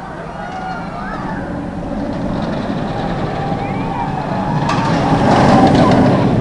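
Steel roller coaster train running along the track overhead, its rumble growing steadily louder as it approaches and surging near the end, with faint distant voices.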